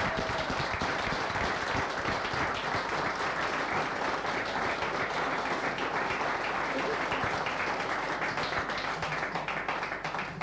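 Audience in a room applauding steadily, a dense patter of many hands clapping that begins to thin out near the end.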